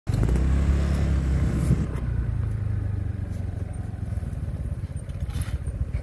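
A small engine running with a low, steady drone, loudest for about the first two seconds, then easing into a lower, uneven rumble.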